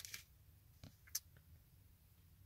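Near silence, broken by a couple of faint ticks of a small plastic zip bag being handled, about a second in.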